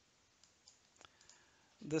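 A few faint, quick clicks from working the computer as the text cursor is moved, about five in a second. A man's voice starts just before the end.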